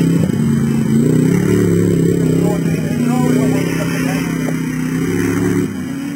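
Off-road competition Land Rover 90's engine revving hard while driving through mud, its pitch rising and falling with the throttle. The sound drops in level abruptly shortly before the end.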